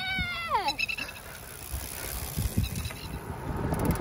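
A drawn-out, high-pitched cheering 'yeah' that falls in pitch and ends within the first second, followed by a low rumble of wind and the bike rolling over grass.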